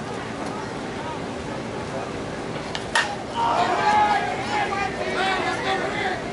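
A single sharp crack of a softball bat hitting a slowpitch softball about three seconds in, followed by players and spectators shouting.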